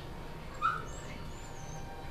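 Young green monkey (vervet) giving thin, high-pitched squeaking calls: two short wavering squeaks, the second longer, starting about a second in.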